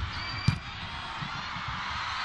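Steady arena crowd noise with one sharp smack about half a second in: a volleyball being spiked.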